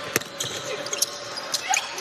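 A basketball dribbled on a hardwood court: a few sharp bounces about half a second apart.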